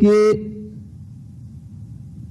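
A man's voice says one drawn-out word in Hindi, held for under a second, then pauses, leaving only low background room noise.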